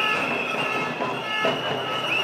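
A walking crowd in a street, with a high, sustained tone over it that bends slightly up and down in pitch.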